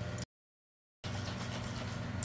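Steady low hum of background room noise, broken about a quarter second in by roughly three quarters of a second of dead silence where the recording cuts.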